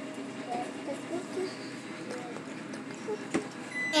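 Quiet room noise with faint, distant voices, and a single light click about three seconds in.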